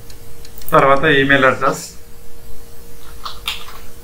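A computer keyboard's keys clicking a few times as text is typed. About a second in comes one drawn-out, wavering voice-like call, about a second long and louder than the typing.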